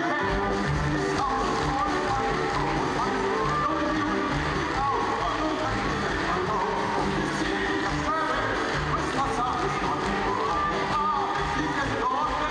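A symphony orchestra with strings plays a steady, lively tune, and a man's voice sings over it through a microphone.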